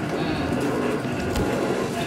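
Steady background noise with faint voices in the distance.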